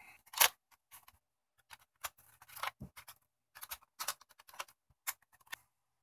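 Faint plastic clicks and scrapes as a First Alert smoke and carbon monoxide alarm is opened and its two AA batteries are pulled out. The sharpest click comes about half a second in, followed by scattered small clicks and rubbing.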